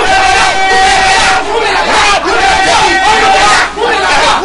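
A preacher shouting in a loud, impassioned voice, drawing out long held cries.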